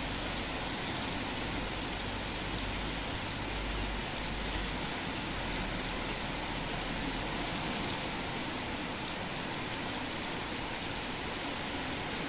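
Steady, even rush of water noise that holds unchanged throughout.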